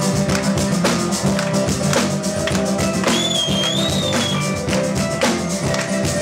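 Live band playing an instrumental passage: a drum kit keeps a steady beat under strummed acoustic guitar and sustained instrument notes. A high, sliding melody line enters about three seconds in.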